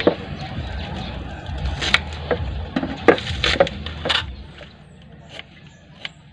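Knife cutting spring onions and ginger on a cutting board: a handful of irregular sharp knocks as the blade meets the board. A low rumble runs underneath and fades out after about four seconds.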